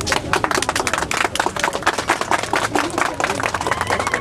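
Crowd clapping: many quick, uneven sharp claps packed together.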